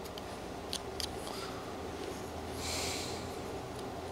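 Whittling knife cutting thin slivers from a small wooden carving: a couple of sharp clicks about a second in, then a short scraping hiss near three seconds.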